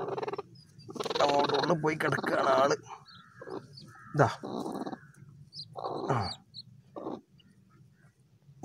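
Broody hen on her eggs growling and squawking harshly as a hand reaches under her, with a longer call from about a second in and shorter calls around the middle.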